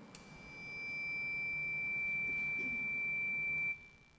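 Sound-system feedback: a single high, pure whistling tone that swells over about a second, holds steady, then cuts off suddenly near the end.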